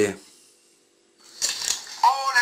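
A man's voice trails off at the start, followed by a short near-quiet gap. About a second and a half in, thin, hissy audio starts from the Doogee F5 smartphone's loudspeaker as it plays a YouTube video.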